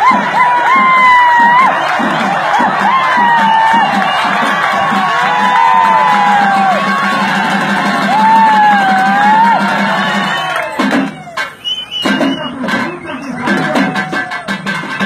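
Live karakattam folk music: a loud, wavering, gliding high melody over fast barrel-drum rhythm, with a crowd cheering and shouting. About three-quarters of the way in the music breaks off for a moment into scattered drum hits and crowd noise, then picks up again.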